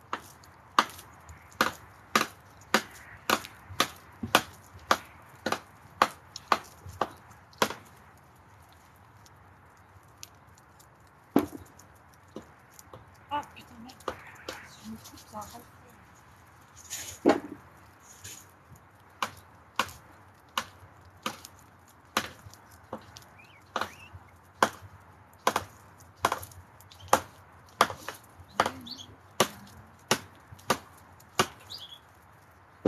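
A knife chopping food on a board in sharp, regular strokes, about two a second at first. After a pause of a few seconds the chopping resumes more slowly, at about one stroke a second.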